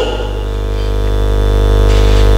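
Steady electrical mains hum and buzz in the microphone and sound system: a low hum with many overtones, growing slightly louder.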